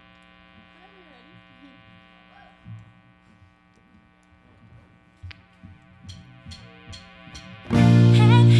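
Steady electric hum from the band's amplifiers between songs, with faint voices in the room. Near the end come a few evenly spaced stick clicks counting in, then the full band (drums, bass, electric and acoustic guitars) comes in loudly.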